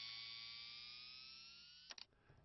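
Fading tail of an electronic transition sound effect: a sustained synthetic tone of several pitches, some gliding slowly upward, that dies away, with a short click near the end.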